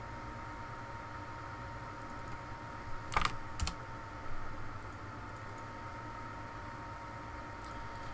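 A few computer keyboard keystrokes entering values, the two sharpest about three seconds in, over a steady low hum with a faint steady high tone.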